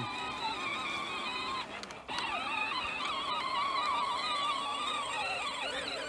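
Electric drive motor and gearbox of a Peg Perego Case IH Magnum 12-volt ride-on toy tractor whining as it drives over grass in first gear, the pitch wavering as it goes. The whine cuts out for about half a second near the two-second mark, then starts again.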